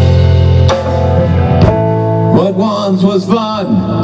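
Live rock band with electric guitars, bass guitar and drum kit: a chord is held ringing for the first couple of seconds, then the band plays on and a male voice starts singing about halfway through.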